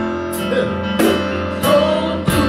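Gospel praise-and-worship music: a group of singers with keyboard over a steady beat.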